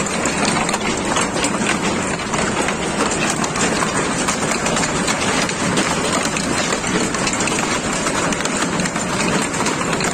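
Heavy hail pelting down: a loud, steady clatter of countless hailstones striking the ground and surfaces, with no let-up.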